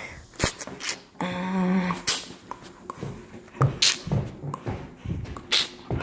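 Footsteps climbing carpeted stairs, with irregular thumps about two a second in the second half. A few sharp clicks come in the first second, and a short held pitched tone sounds about a second in.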